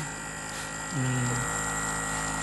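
Cordless percussive massage gun running at its third speed setting: a steady high electric-motor whine over a low buzz, described as a big noise.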